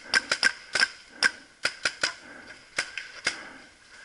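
Paintball marker firing: a quick string of sharp shots at first, then single shots about half a second apart, growing fainter toward the end.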